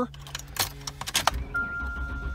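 Keys jangle and click in the ignition of a 1999 Ford Explorer, then its 4.0 OHV V6 cranks and catches on a cold start, a low rumble building from a little over a second in. A steady high warning tone sounds from the dash just after the engine catches.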